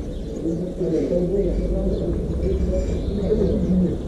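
A bird cooing in low, repeated phrases over a steady low outdoor rumble.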